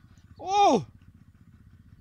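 A short exclaimed "oh" in a man's voice, rising then falling in pitch, about half a second in. Under it, a faint, low, rapid pulsing runs steadily throughout.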